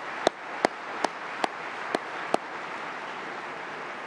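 Audience applause, with six sharp hand claps close to the microphone, about two and a half per second, that stop a little past halfway.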